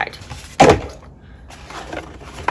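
Cardboard boxes being handled on a countertop, with one loud knock about half a second in as a box is set down or bumped, then quieter handling.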